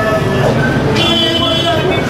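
Men's voices talking over a steady low hum.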